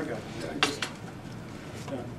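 Two sharp clinks in quick succession just over half a second in, with a fainter one near the end, over low room noise.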